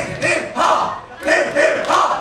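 A group of young male voices shouting together in unison: a string of short, loud shouts in two quick sets of about three, like a chant or battle cry.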